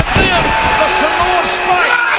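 A man's voice yelling, with a sharp slam-like thump right at the start.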